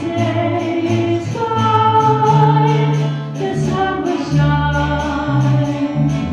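Live group playing: several voices singing together in held notes over acoustic guitars and a steady bass line, with a regular strummed pulse.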